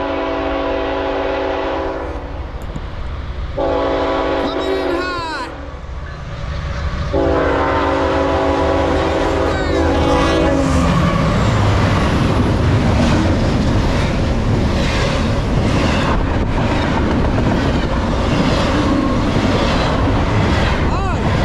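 Norfolk Southern GE ET44AC locomotive's multi-note air horn sounding for a grade crossing: a blast ending about two seconds in, a second one a couple of seconds later, then a longer third blast ending about ten seconds in. The locomotives and double-stack container cars then pass close by at speed with a loud rumble and fast wheel clatter over the rail joints.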